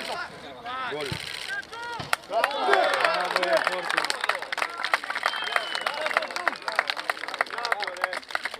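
A group of men shouting "Goal!" and cheering, then clapping their hands in a quick, uneven run of claps mixed with more shouts.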